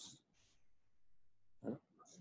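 Near silence: quiet room tone, with a short breath near the end.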